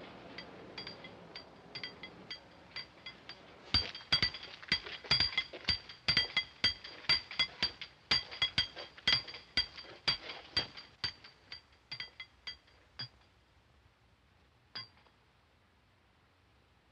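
Hammer blows on a steel chisel cutting into a stone wall: a run of sharp, ringing metallic clinks at an irregular two or three a second. They come thicker about four seconds in, thin out after about thirteen seconds, and end with one last strike near the end. This is the sound of holes being cut into the cell block wall to set dynamite.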